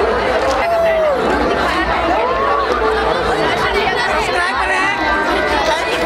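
A crowd of people close by, many voices chattering and calling out at once, some rising and falling in long shouted calls, over a steady low rumble.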